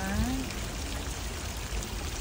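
Steady rushing of running water, as from a stream or cascade feeding the pond. A woman's voice trails off at the start.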